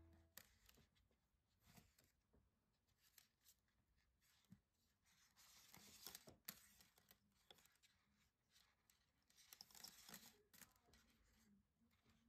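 Near silence: the last of the background music dies away at the very start, then only faint scattered ticks and rustles.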